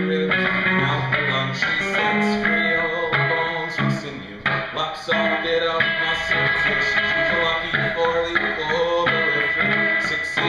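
Electric guitar played live, strummed chords in a steady rhythm through the instrumental passage between sung lines.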